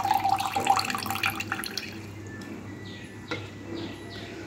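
Milk and rose water being poured and dripping into a bowl, with small clicks. It is louder for the first two seconds, then fainter.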